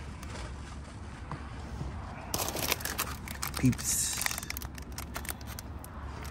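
Plastic-wrapped candy packages and cardboard rustling and crinkling as they are rummaged through by hand, starting about two seconds in, over a steady low hum.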